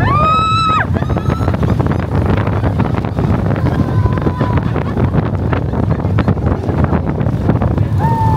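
Wind rushing over the microphone of a rider on the moving Slinky Dog Dash roller coaster, with the train rattling along the track. A rider gives one high scream in the first second, and fainter cries come about halfway through and at the end.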